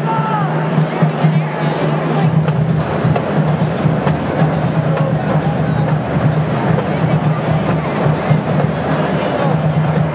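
Crowd chatter in a stadium, with a steady low hum. Music with sharp percussion strikes comes in about once a second through the middle.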